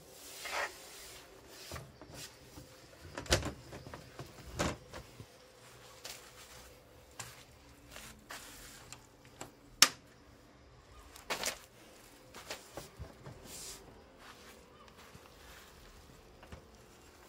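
Scattered knocks, clicks and rattles of an Outsunny folding aluminium picnic table being handled, its metal frame and hinge latch clacking, with the sharpest click a little under ten seconds in.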